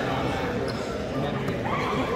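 Indistinct voices calling out in a gym with an echoing hall sound, over dull low thumps. A short rising call stands out near the end.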